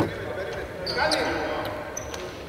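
A basketball bouncing once on the hardwood court as a sharp knock at the start. It is followed about a second in by players' voices calling on court and a few short, high shoe squeaks.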